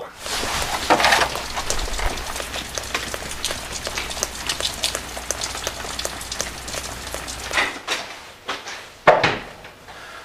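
Rain pattering steadily, a dense crackle of small drops, over a low rumble that stops about eight seconds in. A single sharp knock comes just after nine seconds.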